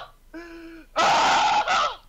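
A man's wordless vocal reaction: a short held voiced sound, then a loud, breathy gasp-like exclamation lasting about a second.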